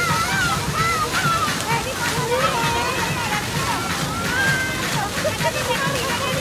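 Water jets of a plaza dancing fountain spraying and splashing steadily, with many people's voices chattering around it.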